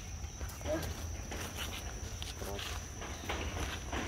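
Light footsteps and rustling in dry leaf litter, with a couple of faint, brief voices and a steady high-pitched hum in the background.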